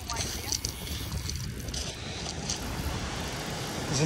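Wind noise on the microphone over the wash of surf breaking on a shingle beach, with a few brief hissing swells.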